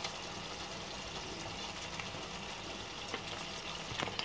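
Masala gravy simmering in a steel pan, a steady low bubbling hiss. A few faint clicks come near the end as a spoon lays kababs into the gravy.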